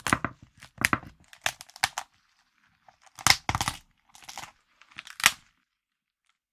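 Close-miked cooked lobster shell being cracked and torn apart by hand, a run of short sharp crunches and cracks in small clusters, the loudest about three and five seconds in.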